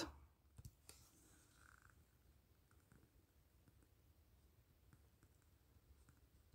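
Near silence: faint room tone, with a few soft clicks a little under a second in.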